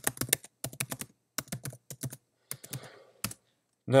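Typing on a computer keyboard: a quick run of keystrokes over the first second and a half, then a few scattered keypresses, the last one just past three seconds in.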